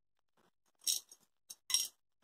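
Three light metallic clinks about a second in and near the end: steel sewing pins clicking against a small clear plastic pin box as pins are picked out to fix the fabric layers together.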